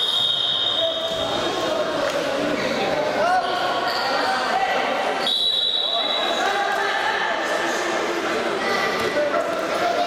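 A referee's whistle blown twice, each a shrill blast of about a second: once at the start, to stop the wrestling, and again about five seconds in, to restart the bout from standing. Spectators' voices echo through the hall throughout.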